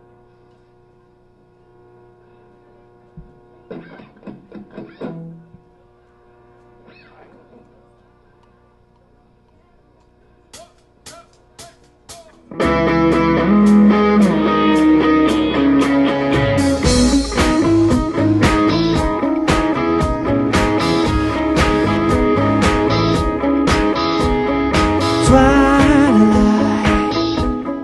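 A live rock band starting a song: after a quiet stretch of faint steady tones, a few sharp clicks about half a second apart count it in, and about halfway through the full band comes in loud together, drums, electric guitars and keyboard playing the instrumental intro.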